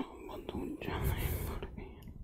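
A man whispering softly close to the microphone, in short breathy bursts.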